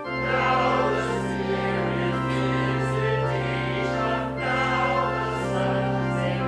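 A choir singing a slow sacred piece over sustained accompaniment, with brief breaks between phrases at the start and a little past the middle.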